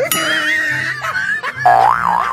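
Edited-in comedy sound effects with wobbling, springy pitch, laid over background music with a steady bass beat. The loudest sound is a pitched, wobbling effect near the end.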